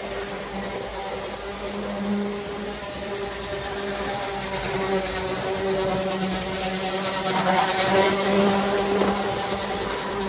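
Standard-gauge tinplate Burlington Zephyr toy train running on the layout, its electric motor giving a steady buzzing hum over the rumble of wheels on the metal track. The sound grows louder about seven seconds in as the train comes close.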